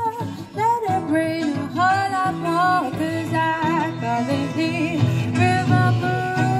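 Live acoustic guitar playing a blues-style accompaniment under a woman's voice singing a melody, with a long held note near the end.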